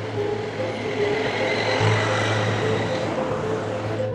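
A vehicle driving by at speed, its rush of engine and tyre noise swelling through the middle and easing off, over tense background music with a steady low drone and short alternating notes.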